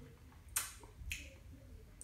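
Two faint, short lip smacks about half a second apart as a man tastes a cola between phrases.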